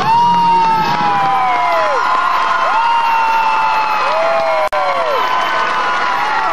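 Audience cheering, with several long 'woo' whoops that rise, hold and fall away, overlapping one another. The sound cuts out for an instant near the end.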